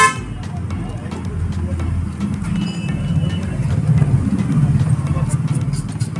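Road traffic rumbling steadily, with a short, loud vehicle horn toot right at the start and a faint horn about two and a half seconds in.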